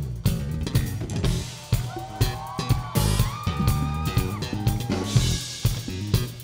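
A live band plays an upbeat song, with a driving drum kit beat and electric bass guitar. About two seconds in, a higher melodic line with gliding, held notes joins in.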